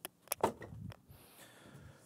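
Empty cardboard box with its paper packing being set down on the floor: a few light knocks and a short rustle in the first second, then faint handling noise.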